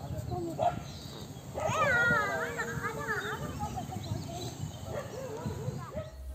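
A child's high voice calling out in a long, wavering call from about two to three and a half seconds in, with fainter voices and low background noise around it.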